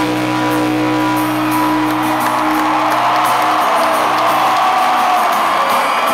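Live rock band holding a sustained chord on guitars and bass that cuts off about three and a half seconds in, under an arena crowd cheering and whooping that swells toward the end.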